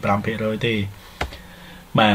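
A man's voice speaking for about the first second, then a single sharp click, as of a computer key or mouse button pressed to move the slideshow on to the next slide.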